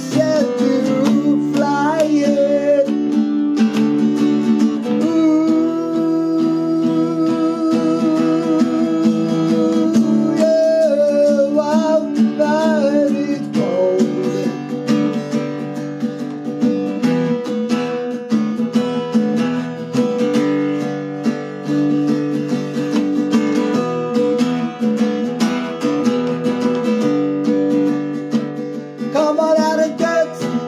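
Acoustic guitar being strummed, with a man singing along.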